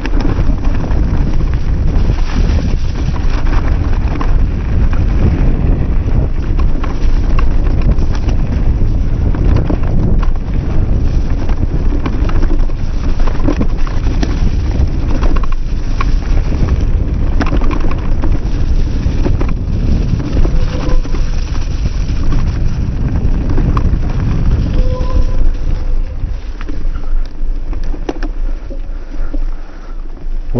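Wind buffeting the camera microphone and knobby tyres rolling fast over dirt and leaves on an e-MTB descent. Frequent rattling knocks throughout, the clatter of a loosely mounted mudguard slapping against the tyre.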